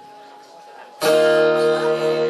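After a quiet first second, an acoustic guitar is strummed and a didgeridoo drone starts with it, loud and sudden, holding steady.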